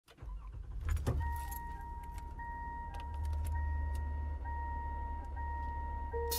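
Car sounds from the opening of the song's recording: keys jangle about a second in, then a car engine runs with a low rumble under a steady high warning tone and faint, evenly spaced chime pips.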